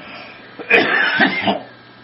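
A man's cough-like throat-clearing sound, lasting under a second and starting a little under a second in.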